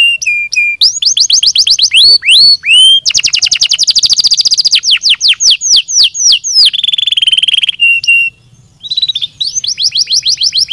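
Domestic canary singing a long, continuous song of rapid trills: runs of quick falling whistles, a very fast rattling trill about three seconds in, and a lower buzzy roll near seven seconds, with a brief break just after eight seconds.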